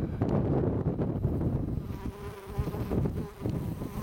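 A flying insect buzzing with a steady hum that comes in about halfway through, over a low rumble of wind on the microphone.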